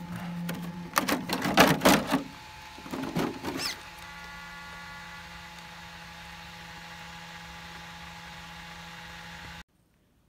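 Traxxas X-Maxx RC truck being handled: plastic clattering and knocks about one and three seconds in. Then a steady low electric hum from the truck's motor and drivetrain, which cuts off suddenly just before the end.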